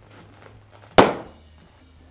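A balloon bursting as it is squeezed by hand: a single sharp bang about a second in, followed by a short ring.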